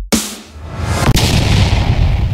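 Two heavy cinematic boom hits about a second apart, each trailing off into a low rumble, right after glitchy electronic music stops.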